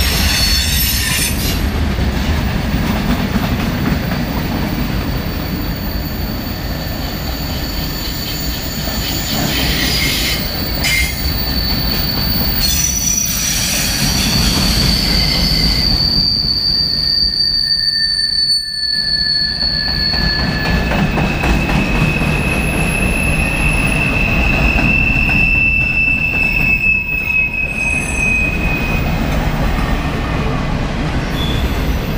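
Freight cars of a long freight train rolling past, with no locomotive in the sound: a steady low rumble of wheels on rail. Thin, high-pitched squeals from the wheels come and go, each held for several seconds.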